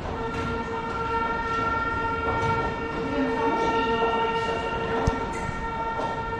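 A single steady high tone with overtones, held unbroken for about six seconds, like a continuous alarm or horn.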